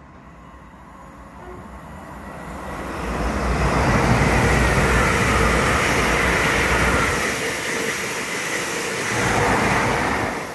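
LNER Azuma high-speed train passing on the line beside the platform. The rush of wheels and air builds over about three seconds, stays loud with a slightly falling whine, eases, then swells once more near the end.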